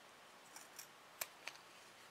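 Small scissors snipping faintly about four times, trimming a fabric zipper tab to the width of the zipper.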